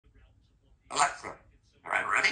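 Congo African grey parrot talking in a mimicked human voice, calling "Alexa" and then "Ready?": two short utterances, one about a second in and the next starting near the end.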